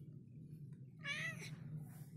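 A domestic tabby cat gives a single short meow about a second in.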